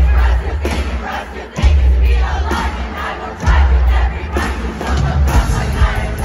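Arena crowd yelling and singing along over a live band's music, with a deep bass hit about every two seconds.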